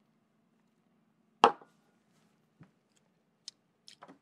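A small stemmed tasting glass set down on a wooden counter: one sharp knock, then a much fainter tap about a second later, over a faint low hum.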